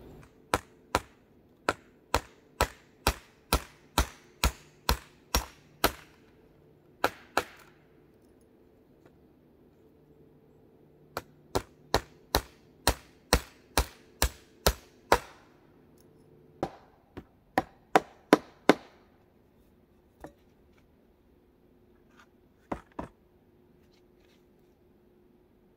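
Hammer blows on wood, evenly spaced at about two a second, as nails are driven into a wooden door frame. A run of about a dozen strikes is followed by a pause, a second run of about ten, then a few scattered taps near the end.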